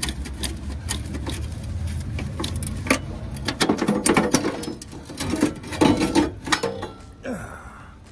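Irregular clicks and knocks, denser and louder from about the middle on, over a low steady hum that fades in the second half.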